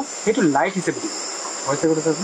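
Crickets chirring steadily at a high pitch, with a person talking in short phrases over them.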